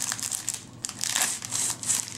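Clear plastic wrapping crinkling in a run of irregular crackles as a makeup palette is handled and pulled out of it.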